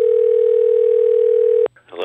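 A single steady electronic beep, one mid-pitched tone held for nearly two seconds, then cut off suddenly, followed by a brief snatch of voice.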